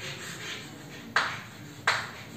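Chalk writing on a blackboard, with two sharp taps about two-thirds of a second apart as the chalk strikes the board.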